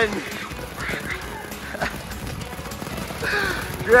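Steady hiss with a few faint pops from small ground fireworks and smoke bombs burning, with faint voices in the background.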